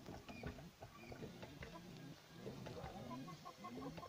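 Chickens clucking faintly in short repeated calls, with a quick run of short higher notes near the end.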